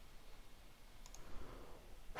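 Faint background hiss with a faint computer mouse click about a second in.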